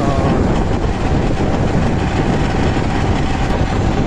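Steady rush of wind buffeting the microphone, mixed with road and engine noise from riding along at speed in an open vehicle.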